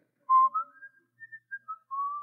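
A person whistling a short tune, a series of separate notes stepping up and down, the first one the loudest.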